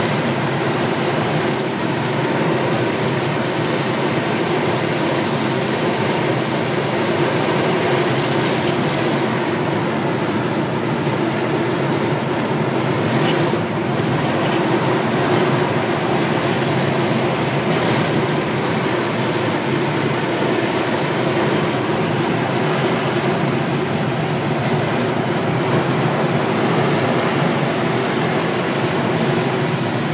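Steady rush of air over a glider in flight, heard from inside the cockpit: a constant, loud noise that does not change.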